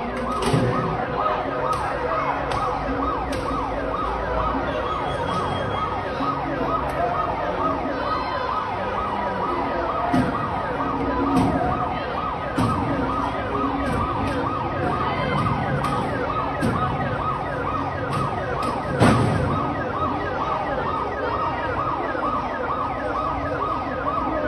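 Emergency-vehicle sirens, several overlapping, sweeping up and down in pitch in a fast repeating pattern. A single sharp bang cuts through about nineteen seconds in.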